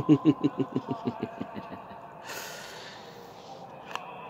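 A man laughing: a quick run of 'ha's that fades out over about a second and a half, followed about two seconds in by a short hiss.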